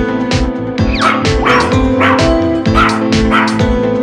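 Several dog barks, starting about a second in, laid over upbeat background music with a steady beat.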